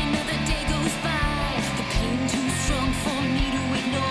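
Rock band playing a song, with a woman singing lead over electric bass, guitar and drums.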